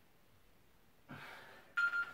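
A man breathes out hard during a dumbbell exercise about a second in, then near the end there is a sudden, short, high ringing tone, the loudest sound here.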